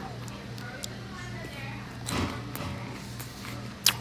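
Quiet background music with a faint murmur of voices, and one sharp click just before the end.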